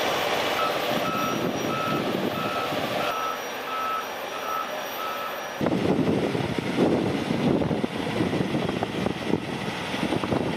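Truck reversing alarm beeping at an even pace, about one beep every two-thirds of a second, over a diesel engine running; the beeping stops after about five seconds. Then a heavy diesel tractor-trailer's engine runs louder with a rough rumble.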